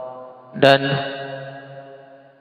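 A man's voice drawing out the word "dan" on one steady pitch, fading away over more than a second: a hesitation in speech.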